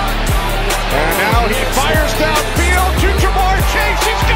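Background music with a heavy beat: deep bass notes that drop in pitch, with gliding melodic lines over them.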